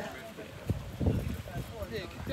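Several men's voices talking over one another in a group, with a couple of short knocks about a second in.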